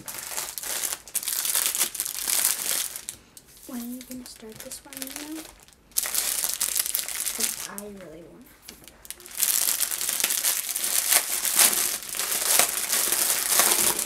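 Clear plastic packaging crinkling as bags of diamond-painting drills and the plastic-wrapped canvas are handled. It comes in spells: for the first few seconds, briefly around six seconds, and steadily from about nine and a half seconds on.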